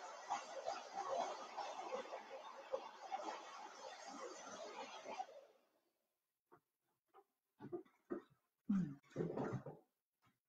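Handheld hair dryer blowing steadily, drying chalk paste on a stencil, switched off about five and a half seconds in. It is followed by a few short, faint handling sounds and a brief murmur of voice near the end.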